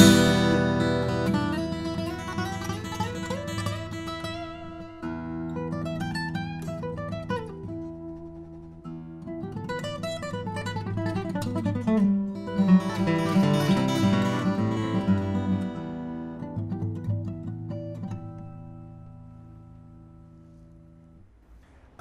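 Furch Yellow Deluxe Gc-SR steel-string acoustic guitar, a grand auditorium cutaway with a Sitka spruce top and Indian rosewood back and sides, played fingerstyle. It opens with a loud struck chord, then rings through chords and quick runs up and down the neck. It grows louder in the middle and dies away near the end.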